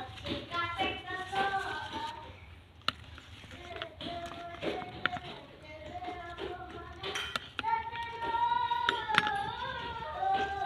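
Children's voices talking and singing throughout, with a long held sung note near the end. A few light clicks of a metal spoon against a plastic plate as a tofu mixture is scooped out.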